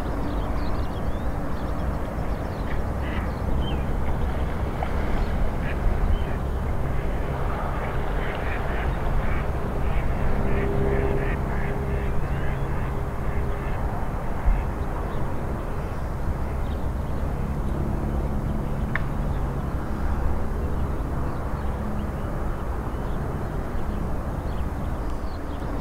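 Ducks and other waterbirds calling on a lake, with quacking among them. The short calls come and go, busiest in the first half, over a steady low rumble.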